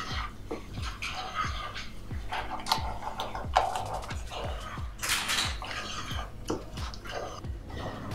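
Wooden spoon stirring and scraping thick cheese sauce around a stainless steel saucepan, with irregular scrapes and light knocks against the pan, over background music with a steady beat.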